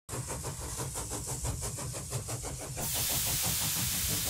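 Steam engine running with a rapid, even beat of about six strokes a second, giving way about three seconds in to a steady hiss of steam.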